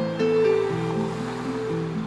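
Slow, gentle instrumental background music of held notes changing about every half second, with a soft hissing wash running under the notes.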